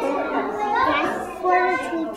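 A young boy speaking in a child's voice.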